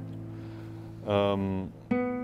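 Nylon-string classical guitar: a held chord rings and slowly fades, a short spoken sound comes about a second in, and a new note is plucked just before the end.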